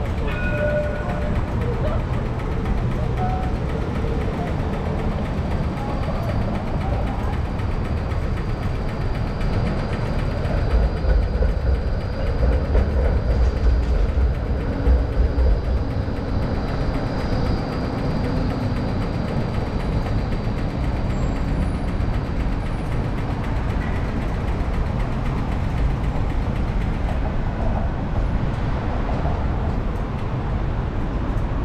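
City intersection traffic with an electric tram passing: a low rumble that swells for several seconds around the middle, with cars and a van going by. A thin, steady high whine runs through much of it.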